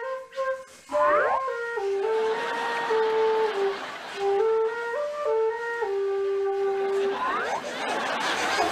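Wooden flute playing a slow melody of held notes, which stops shortly before the end. A brief rising glide sounds about a second in and again near the end.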